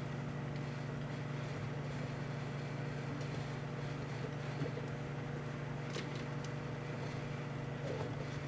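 Emerson microwave oven running with light bulbs inside: a steady low hum. A faint click comes about six seconds in.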